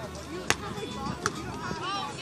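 A volleyball being struck by players' hands in a beach volleyball rally. There is a sharp slap about half a second in, then a second, fainter one a little under a second later, with voices in the background.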